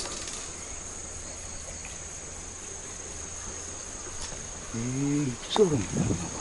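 Insects trilling in a steady, high-pitched drone, with a man's drawn-out 'hoo' of interest near the end.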